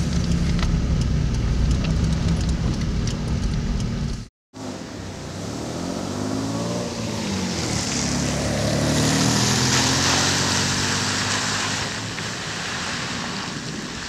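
Car driving on a wet road: a steady engine drone and road noise, cut off briefly about four seconds in. The engine comes back changing pitch, with a loud hiss of tyres on wet asphalt building up midway and easing near the end.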